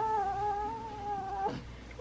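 Newborn baby lying on her tummy, giving one long, steady fussing cry that stops about one and a half seconds in.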